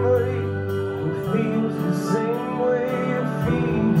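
Live rock band playing between sung lines: electric guitar, electric bass and a drum kit, with cymbal strikes keeping a steady beat.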